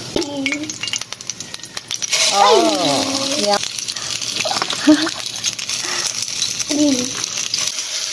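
Pork tocino dropping into hot oil in a nonstick frying pan and starting to sizzle, the steady hiss setting in about two seconds in. Early on the plastic packet crinkles as it is squeezed, and a fork clicks against the pan as the meat is spread.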